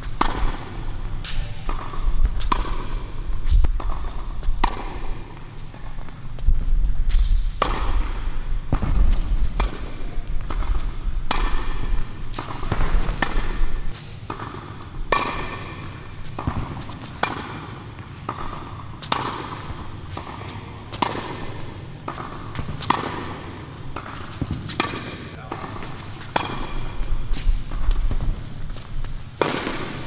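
Tennis balls struck by rackets and bouncing on an indoor hard court: a quick, irregular series of sharp pops and thuds, each echoing in the hall.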